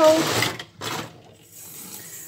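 Soapy water draining down the plughole of a stainless steel kitchen sink full of pebbles, gurgling loudest in the first half second. Near the end a tap starts to run faintly.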